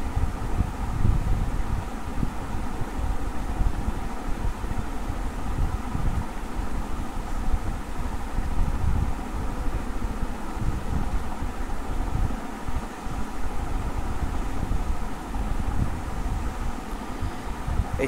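Steady background noise with an uneven low rumble underneath and a faint steady hum, picked up by an open microphone.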